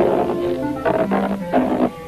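Cartoon soundtrack: music under two rough, raspy vocal outbursts from a cartoon duck character, the first about a second in and the second near the end.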